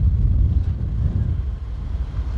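Low, uneven rumble of wind buffeting the microphone and road noise from a moving motorbike.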